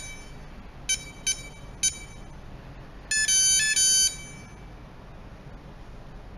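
Electronic beeps from an RFID keypad locker lock's buzzer: three short beeps in the first two seconds, then a longer run of stepped tones a little past three seconds in. These are the lock answering entries while a user key is being deleted.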